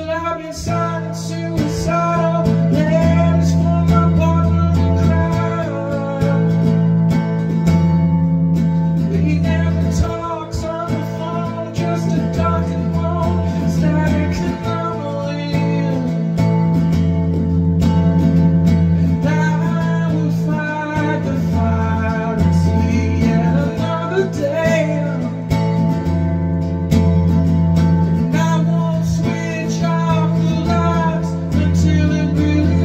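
A solo singer performing a song, accompanied by a strummed cutaway acoustic guitar.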